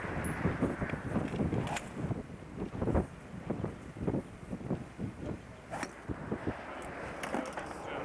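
Uneven low rumbling noise throughout, broken by a few sharp clicks; the clearest, about six seconds in, fits a golf club striking a ball off a driving-range mat.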